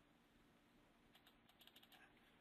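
Near silence, with a quick run of about ten faint computer-keyboard key clicks in the second half.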